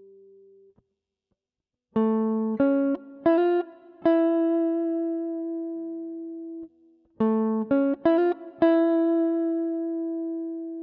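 Gibson ES-137 Custom semi-hollow electric guitar with a clean humbucker tone playing the A7 turnaround lick (A, C#, F, E) unaccompanied, twice. Each phrase is a quick run of picked single notes ending on a held, ringing note, beginning about two seconds in after a short silence.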